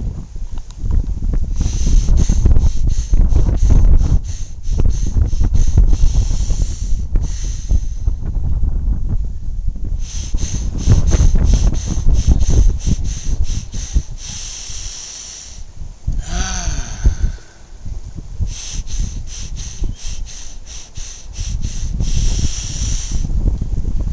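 A man breathing hard in a set pattern: three runs of rapid, sharp short breaths, each run ending in a longer, slow breath. This is the 21-breath routine of six quick breaths and one long one, done three times. Wind rumbles on the microphone underneath.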